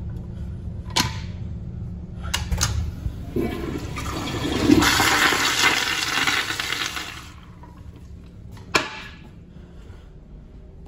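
A Sloan flushometer flushing a Kohler Highcliff commercial toilet. A few clicks come first, then a loud rush of water builds about three seconds in, peaks and cuts off fairly sharply about four seconds later. A quieter hiss and one sharp click follow near the end.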